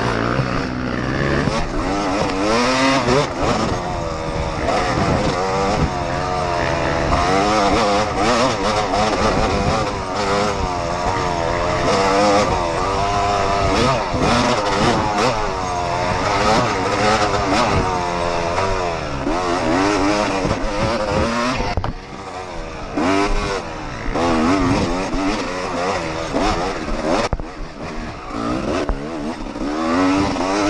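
Yamaha YZ250 two-stroke dirt bike engine revving up and down continuously as the rider works the throttle along a woods trail, heard from the rider's own bike with wind noise. The revs ease off briefly a little past the middle, then pick up again.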